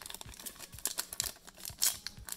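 Trading cards and a foil booster-pack wrapper being handled: a quick run of light clicks and crinkles, with a louder rustle near the end.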